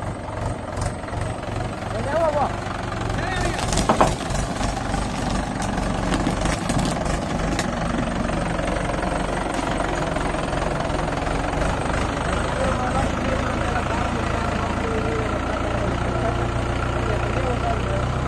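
Mahindra 575 DI tractor's four-cylinder diesel engine running steadily as the tractor drives along. A single sharp knock stands out about four seconds in, and voices are heard faintly.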